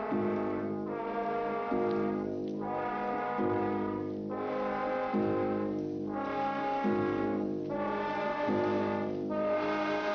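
Brass-led orchestral film score: slow, held chords that change about once a second.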